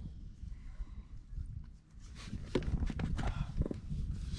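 Small parts being handled and screwed together by hand: a few light clicks and taps in the second half, over a low steady rumble.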